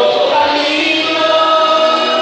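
Women's choir singing, with long held notes.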